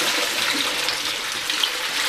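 Water pouring steadily and splashing into a bucket from the just-unscrewed sump of a 20-inch Big Blue whole-house filter housing as it is emptied.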